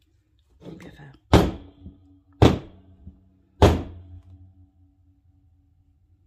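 Three hard knocks about a second apart, each leaving a short ringing tail: a plastic pouring cup of thick cold-process soap batter being knocked against the loaf mould to shake out batter that has started to thicken.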